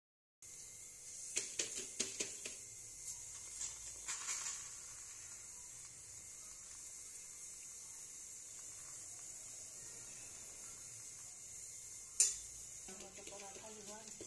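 Paratha cooking on a hot tawa: a faint steady hiss with a few small ticks in the first few seconds and one sharp click about twelve seconds in.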